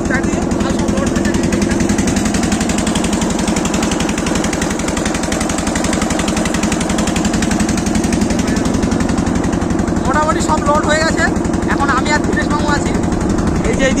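Motorboat engine running steadily underway, a fast even chugging.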